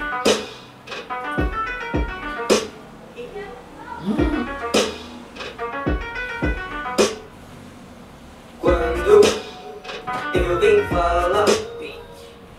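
Intro of a Brazilian hip-hop track: a sparse beat of deep kick drums and sharp percussive hits, with pitched sounds between them, before the rapping starts.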